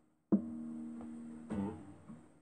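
Acoustic guitar played slowly by hand: two chords are plucked, the first about a third of a second in and the second about a second later, each left to ring and fade.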